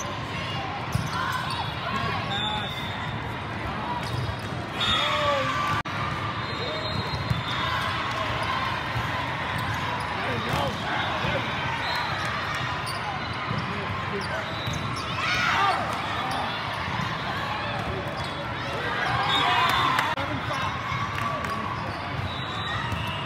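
Din of an indoor volleyball tournament hall with many games going on: balls being struck, with a sharp hit now and then, and players and spectators talking and calling out. Louder bursts of shouting come about a quarter of the way in, about two-thirds in, and near the end.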